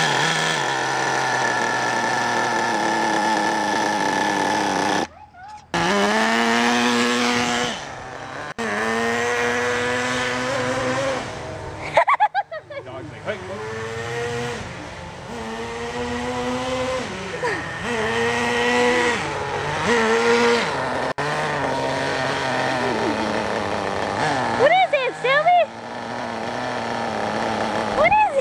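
Small two-stroke nitro glow engine of an RC buggy running and revving, its high, buzzy pitch climbing and falling in repeated runs with a few short breaks. Quick warbling pitch swings come near the end.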